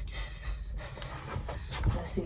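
A woman breathing hard from the exertion of dancing, with a few faint short sounds of movement.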